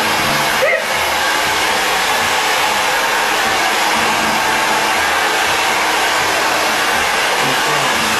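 Handheld corded hair dryer running steadily, blowing on a person's hair as it is styled.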